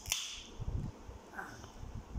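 A 7 Up aluminium soda can's ring-pull cracking open with a sharp snap and a short hiss of escaping carbonation, then a dull thump about halfway.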